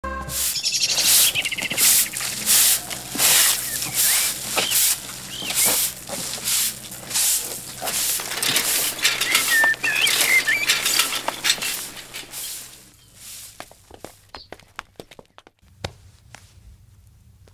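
Birds chirping over a rhythmic swishing, roughly one and a half strokes a second, that stops about 13 seconds in, leaving only faint scattered clicks.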